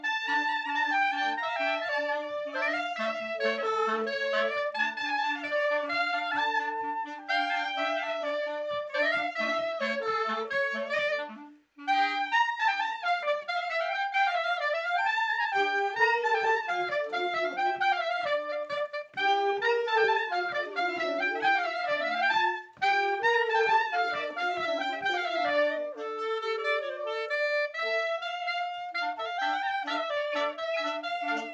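A small wind ensemble of clarinets and alto saxophones, with a flute, playing a traditional Polish village folk tune together. The playing breaks off briefly a little before halfway and then starts again.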